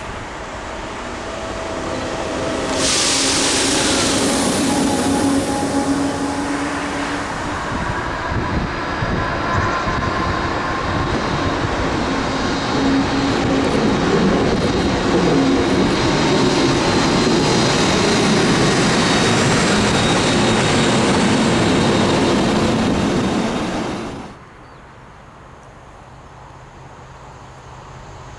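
SNCF BB 22200 electric locomotives passing close: loud wheel and rail noise with steady motor hums and a high whine, building from about 3 seconds in. Near the end the sound drops suddenly to a faint distant train rumble.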